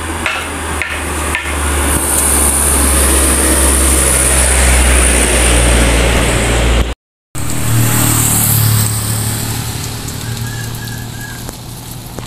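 A truck driving past on the road, its engine rumble and tyre noise building to a peak about halfway through. After a short break the sound continues as a lower steady hum that slowly fades.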